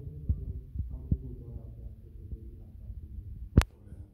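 Low rumbling handling noise from a hand-held recording device, with a few soft thumps and faint, muffled voices in the room. About three and a half seconds in, one sharp click stands out as the loudest sound.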